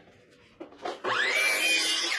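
Sliding compound miter saw motor switched on about a second in, its whine rising in pitch as the blade spins up and then holding steady.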